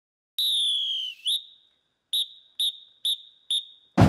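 A whistle blown in one long blast that sags slightly in pitch, a quick chirp, then four short, evenly spaced tweets about half a second apart: a marching band's whistle count-off before the drums come in.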